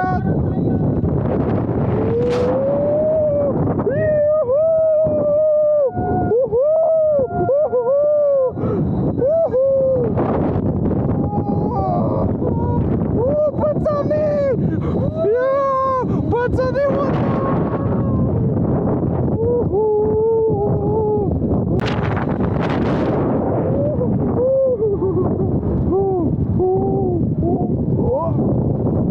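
People screaming and yelling on a giant pendulum ride as it swings through full 360-degree loops, in short drawn-out cries. Heavy wind buffets the microphone throughout.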